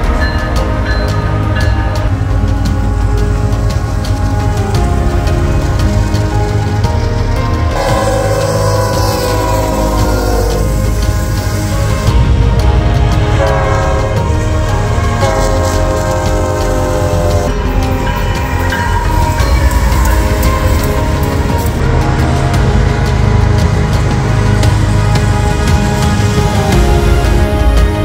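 Music mixed with the sound of diesel freight trains passing, with locomotive air horn blasts held as chords about eight seconds in and again around fourteen to seventeen seconds.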